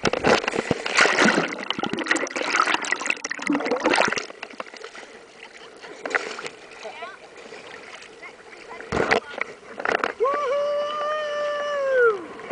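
Sea water splashing and sloshing close around a camera held at the water surface, loudest and busiest in the first four seconds, with another sharp splash about nine seconds in. Near the end a person lets out one long, steady, held yell.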